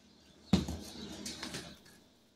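A spice jar knocks against the kitchen counter about half a second in, followed by about a second of soft scraping and rustling as the jars are handled.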